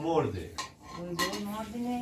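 Metal kettle lid lifted off and handled on a kettle sitting on a kerosene heater, giving a couple of short metallic clinks, with a low voice murmuring in between.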